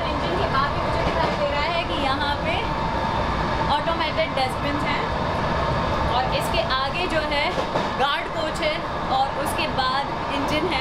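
People talking over the steady rumble of a moving passenger train, heard from inside the coach.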